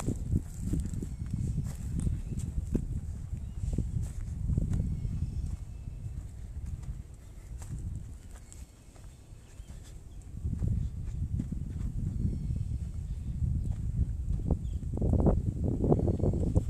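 Footsteps walking on dry dirt, with a low rumble of wind and handling on the microphone; the sound eases off for a few seconds in the middle.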